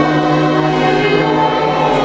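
A small choir singing in sustained chords, accompanied by a string ensemble of violins and cello.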